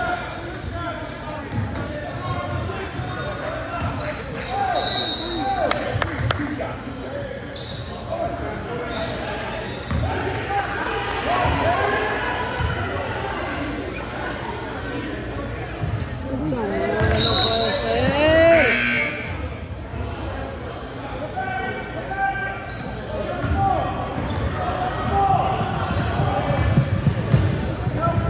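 Basketball bouncing on a hardwood gym floor during play, with shouting and chatter from players and bench, echoing in a large gym. The voices grow louder for a moment a little past the middle.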